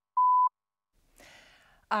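The last, longer pip of the radio top-of-the-hour time signal: one steady high beep lasting about a third of a second, marking the exact start of the hour. A faint breath follows about a second later, just before a voice begins.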